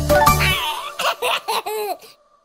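Upbeat children's song music stops about half a second in. A baby then laughs in several short giggling bursts.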